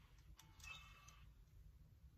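A faint click and then a short, faint electronic beep from a Canon PowerShot G7X Mark II compact camera switching on. The rest is near silence.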